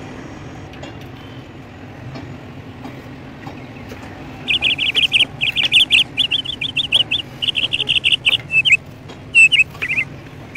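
A bird chirping in rapid runs of short, high notes, starting about halfway in, over a steady low hum.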